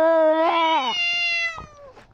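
Cat yowling at another cat in a face-off: a long drawn-out call that holds steady, slides down in pitch about half a second in, then goes on as a higher call that tails off before the end.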